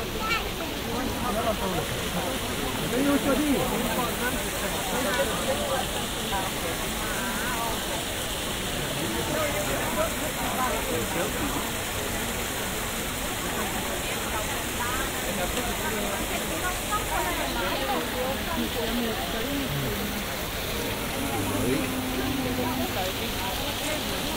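Water from a large marble fountain's jets splashing steadily into its basin, under the indistinct chatter of a crowd.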